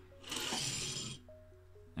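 Soft background music with held notes, over which a diecast toy car scrapes on a cutting mat for about a second as it is set down.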